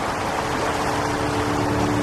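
Steady rushing of flowing water, with a faint low hum of two held tones beneath it.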